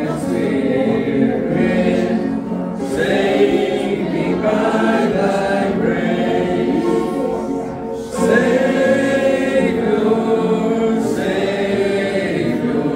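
Church congregation singing a hymn together, in steady sung lines with a brief breath between phrases about eight seconds in.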